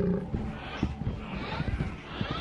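Growls of a huge lumbering beast of burden, a creature sound effect, recurring about once a second over low, irregular thuds. A drawn-out groaning 'ooh' from C-3PO trails off right at the start.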